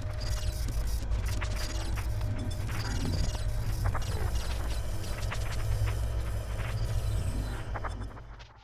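Seismograph-themed TV news programme ident: a steady low rumble under irregular mechanical clicks and ticks, fading out right at the end.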